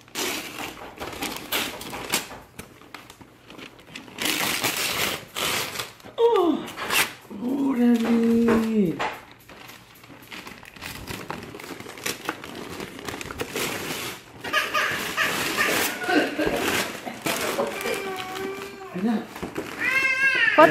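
Wrapping paper being torn and crumpled off a gift in several noisy rips, with voices talking in between.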